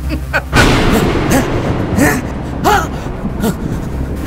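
A sudden loud boom about half a second in, dying away over the next second, with a man's voice giving several drawn-out cries that rise and fall in pitch, in the wake of his maniacal laughter.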